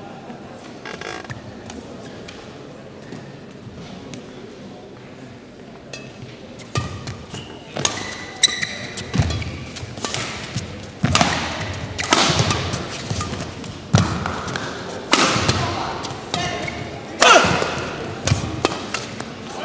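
Badminton rally: racket strikes on the shuttlecock every one to two seconds, with short high shoe squeaks on the court floor, starting about seven seconds in after a stretch of low hall murmur.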